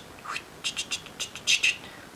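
A quick run of short, faint mouth clicks and chirps, about six in two seconds, with one brief rising chirp near the start.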